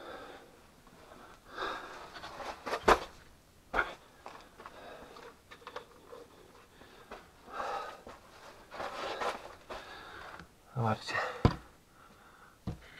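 Hushed whispering and breathing in a confined mine tunnel, with two sharp knocks of boots or rock on the rubble floor about three and four seconds in, and a short low voiced sound near the end.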